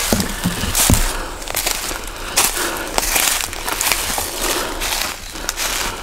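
Footsteps crunching through dry leaf litter on a woodland floor, at a steady walking pace.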